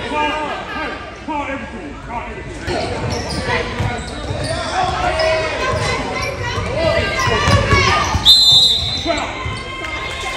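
A basketball bouncing on a hardwood gym floor, with voices carrying through a large, echoing gym. A short, high, steady whistle sounds about eight seconds in, likely the referee's.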